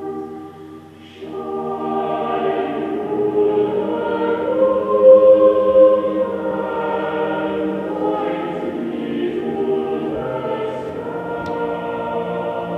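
A choir singing held, slow chords in recorded music, dipping briefly about a second in before the voices swell again.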